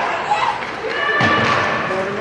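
Ice hockey game in an indoor rink: spectators' voices with a thud, and a held tone about a second in that lasts under a second.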